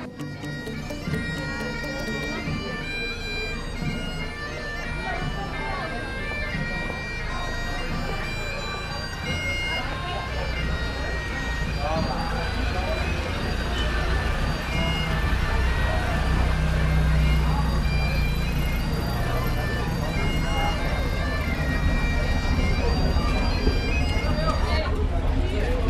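Bagpipes playing a melody of held notes. From about halfway a low engine rumble builds beneath them as a heavy military vehicle approaches.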